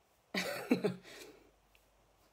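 A woman's short, throaty vocal burst lasting about a second, starting about a third of a second in.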